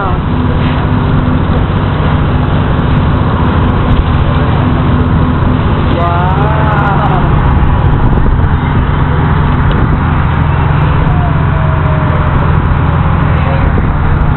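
A boat's engine running steadily with a low hum, under the rush of water along the hull. A voice calls out briefly about six seconds in.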